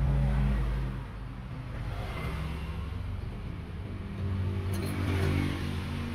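Engines of passing road vehicles, running low and steady. One fades within the first second and another swells about four and a half seconds in.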